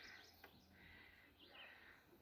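Faint wild birdsong: a warbling phrase at the start and another short one about one and a half seconds in, with a soft click about half a second in.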